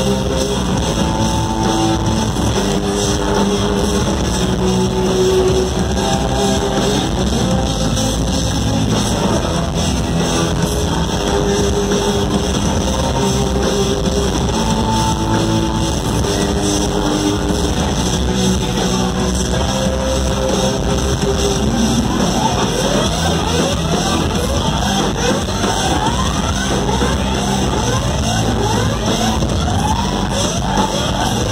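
Live rock band playing loudly, led by an electric guitar solo: held, wavering notes over drums and bass, then, about two-thirds of the way through, a run of quick rising pitch sweeps, one after another.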